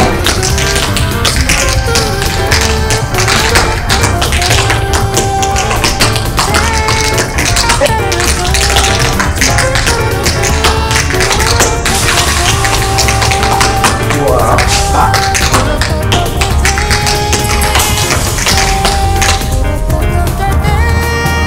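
Tap shoes striking the floor in quick, dense rhythms during a tap dance, over Latin techno music with a steady bass beat.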